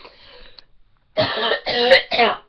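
A woman coughing: two loud coughs back to back about a second in, part of a cough she says won't go away.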